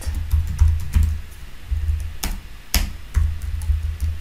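Keystrokes on a computer keyboard as code is typed: scattered light clicks, with two sharper ones in the second half. Background music with a low bass line runs underneath.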